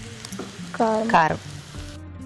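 Chopped onions sizzling as they fry in oil in a pan, with spice powder being spooned on. A short voice sound about a second in is the loudest thing.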